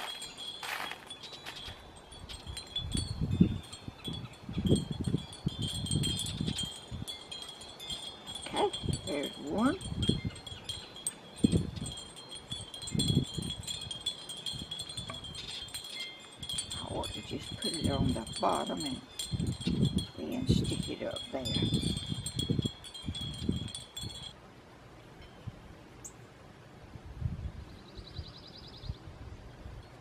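Wind chimes tinkling in a breeze, with irregular low gusts of wind buffeting the microphone.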